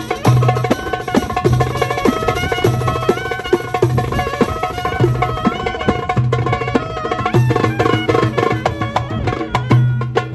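A Turkish Roma street band playing: a melody line with sliding, ornamented notes over a busy hand-drum rhythm. A deep drum stroke comes in roughly every second.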